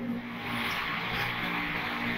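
Steady background noise with a faint low hum, with no clear strokes or beats.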